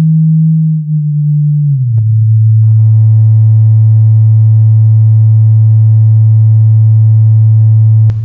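Loud, low synthesized sine-wave tone that glides down in pitch during the first two seconds, then holds one steady pitch. About two and a half seconds in, faint buzzy overtones join it.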